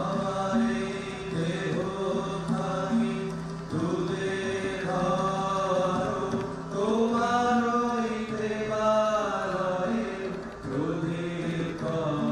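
Student choir singing an inaugural song in long held phrases, with guitars and drums accompanying.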